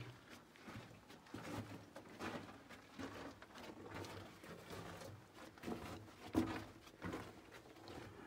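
Faint, uneven scuffing and shuffling of a person crawling over the dirt and rock floor of a narrow mine tunnel, with a sharper knock about six and a half seconds in.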